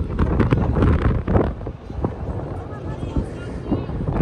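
Wind buffeting the microphone with a steady low rumble, under indistinct shouts and voices from the field, louder in the first second and a half.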